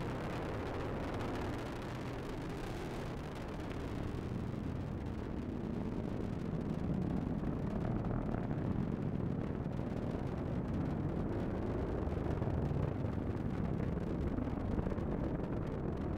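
Steady low rumble of an Atlas V rocket's RD-180 first-stage engine during ascent, swelling slightly a few seconds in.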